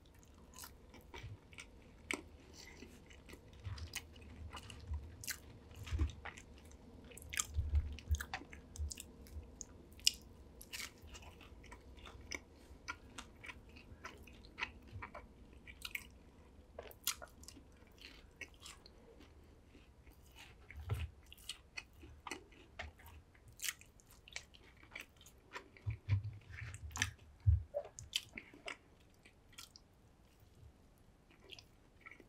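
Close-miked chewing and biting of fast-food fries and chicken nuggets: irregular crunches and sharp mouth clicks, with a few dull low thumps, the loudest near the end.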